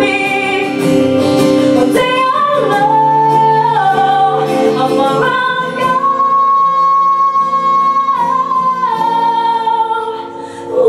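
A woman singing a song into a microphone, accompanied by strummed acoustic guitar, holding one long steady note about six seconds in.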